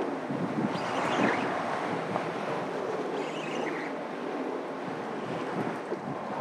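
Wind rushing steadily over the microphone, with water washing around the boat.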